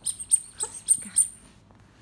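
Soft toy block squeaked repeatedly: five sharp, high squeaks about a third of a second apart.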